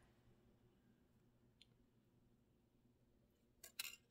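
Near silence, broken by a few faint, short clicks near the end as thin copper weaving wire is handled and pulled around the base wires.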